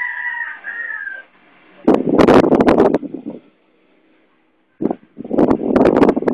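A rooster crows at the start, one call lasting about a second and a half and falling slightly at the end. Then come two loud, harsh bursts of close-up vocal noise, each about a second and a half long, that distort the microphone.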